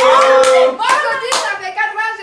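A few sharp hand claps amid excited voices in a small room.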